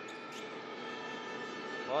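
Basketball arena ambience under a live TV broadcast: a steady crowd murmur with a constant hum of several steady tones. A commentator's voice begins right at the end.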